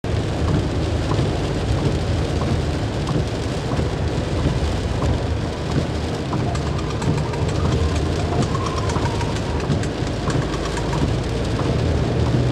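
Heavy rain drumming steadily on a moving car's roof and windscreen, heard from inside the cabin over the low rumble of the car on the road.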